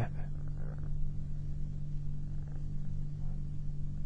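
Steady low electrical hum with faint room noise, the speaker silent.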